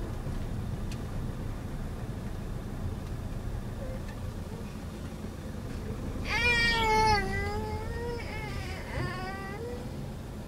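Two high-pitched whining cries over the steady low rumble of a moving car's cabin: a long, loud one about six seconds in that sinks slightly in pitch, and a shorter one near the end that rises.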